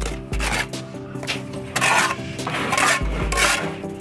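Steel brick trowel scraping mortar along fresh brick joints, several short rasping strokes, over steady background music.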